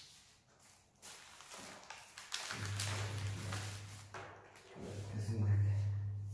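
A man humming a low, steady wordless "hmm" twice while thinking, each about a second and a half long, the second louder. A sharp click comes right at the start.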